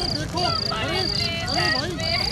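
Crickets chirping in a steady rhythm, about two short, high chirps a second, over lower wavering, wailing tones and a low rumble.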